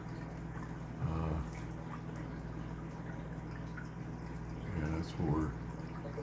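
Aquarium air stones and filter bubbling steadily in the tank, over a low steady hum.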